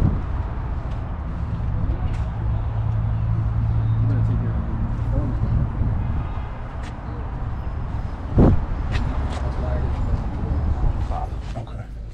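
A vehicle engine idling with a steady low hum, people's voices faint in the background, and a single sharp knock about eight and a half seconds in.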